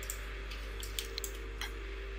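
Several faint, sharp clicks of a computer mouse over a steady low hum.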